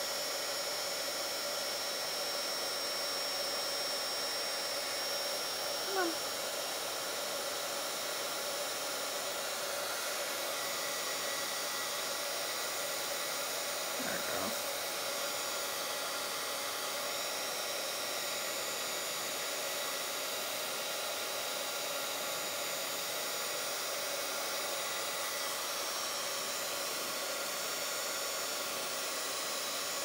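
Craft heat gun blowing steadily, melting clear embossing powder onto a small starfish.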